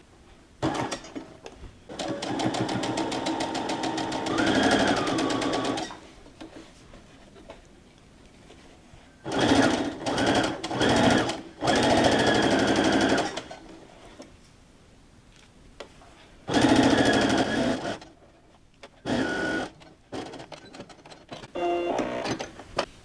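Electric sewing machine stitching in several runs of a few seconds each, stopping and starting with short bursts and pauses between, as it top-stitches along the folded edge of the fabric.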